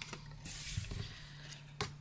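Soft rustling of cardstock and paper being handled on a wooden desk, with a light tap near the end as a piece is set down.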